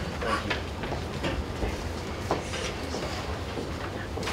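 Room noise in a crowded meeting room: a steady low hum with scattered knocks and shuffles as people move about, including footsteps of someone walking up to the microphone.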